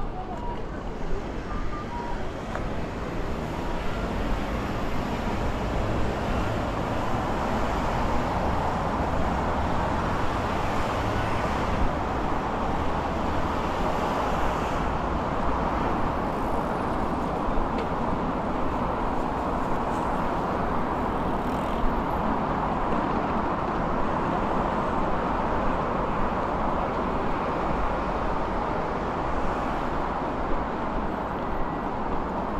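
Steady road traffic on a wide multi-lane city avenue: a continuous rush of tyres and engines from passing cars and vans.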